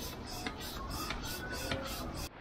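Hand-operated piston air pump inflating an inflatable boat, each stroke giving a short rush of air in a steady rhythm of about four strokes a second.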